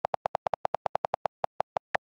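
iPad on-screen keyboard key-click sounds from quick typing: a rapid run of short clicks, about eight a second, with a couple of higher, sharper clicks near the end.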